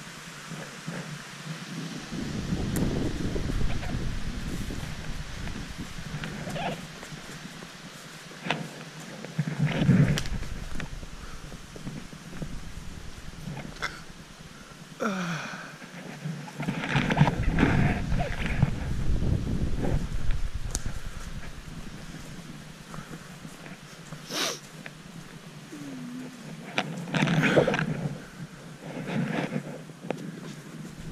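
Wind buffeting the microphone in irregular low gusts, over footsteps and rustling on a leaf-littered path.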